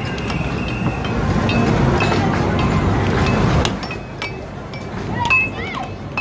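Air FX air hockey table in play: the puck clacks sharply against the mallets and rails many times, over a steady din of arcade noise. Short gliding electronic game tones sound near the end.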